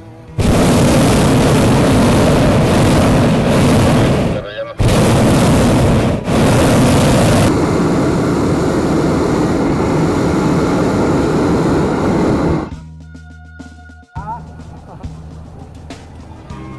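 Hot-air balloon propane burner firing overhead, loud and steady, cut off briefly twice, about four and a half and six seconds in, and shut off about thirteen seconds in.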